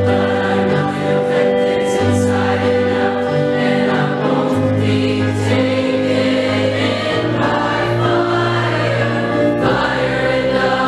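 Mixed show choir of teenage girls' and boys' voices singing a song in harmony, holding chords that change every second or two.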